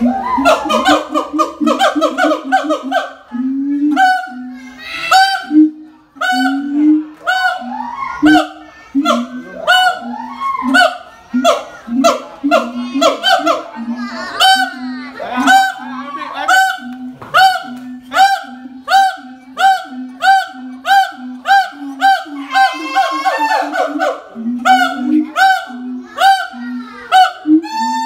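Siamang gibbons calling very loudly: a long series of booming notes from the throat sac, each topped by a sharp bark, repeating evenly at about one and a half a second in the second half.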